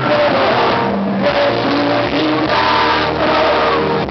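A live pop-rock band playing with guitar and a singer's voice, recorded from within the concert crowd.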